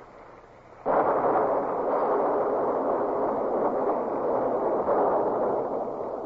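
Sound effect of a sailing warship's cannon broadside, fired on the order. It starts suddenly about a second in and carries on as a dense, continuous din of gunfire.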